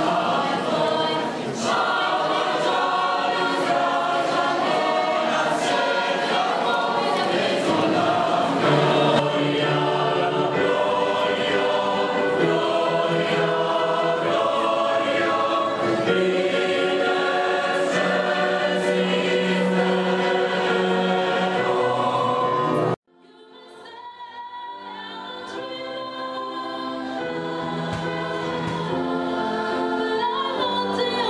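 A large choir singing together. About three-quarters of the way through, the singing cuts off abruptly, and a new stretch of choral singing fades in gradually.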